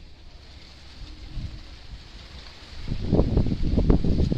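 Wind buffeting the microphone: a low rumble that swells into a loud gust about three seconds in.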